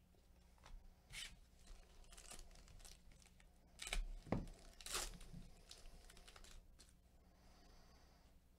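Foil trading-card pack being torn open and its wrapper crinkled: faint, in a few short bursts, loudest about four to five seconds in.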